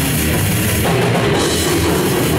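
Live metal band playing loud and without a break: distorted guitars and bass over a pounding drum kit with cymbals.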